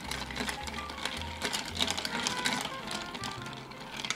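Ice cubes clicking and rattling against a glass mixing glass as a long bar spoon stirs a cocktail, a fast run of light clinks, over quiet background music.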